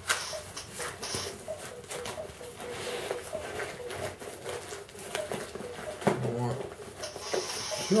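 Cardboard pieces and a plastic bag being handled during packing: scattered scrapes, taps and rustles, with a louder rustle near the end.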